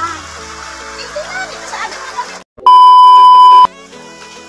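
Music with a voice over it, then a brief cut to silence and a loud, steady, high single-pitch beep lasting about a second, a censor-style bleep sound effect; quieter music follows.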